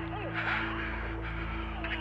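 Low, steady droning film score, with faint wavering sounds over it and a brief brighter burst about half a second in.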